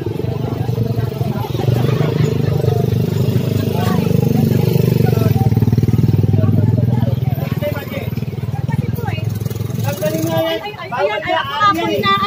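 A motorcycle engine running close by, a steady low rumble that swells slightly in the middle and fades about eight to ten seconds in, when voices of people talking take over.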